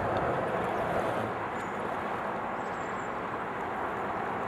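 Skateboard wheels rolling steadily over a smooth skatepark surface, an even rolling noise with no pauses or impacts.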